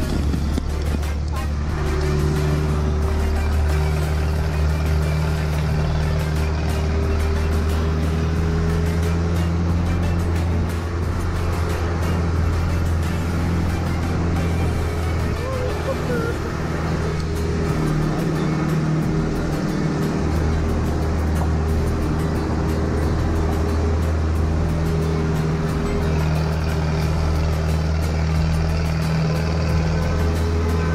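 4x4 jeep engine running steadily under load as it climbs a steep gravel mountain road, its note changing briefly a little past halfway through.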